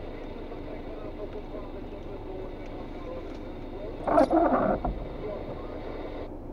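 Steady hum of a car idling while stopped, heard inside the cabin, with a short burst of a voice about four seconds in.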